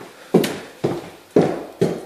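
Footsteps, about two a second, of a person walking through an empty room.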